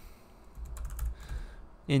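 Typing on a computer keyboard: a quick run of keystrokes starting about half a second in and lasting about a second.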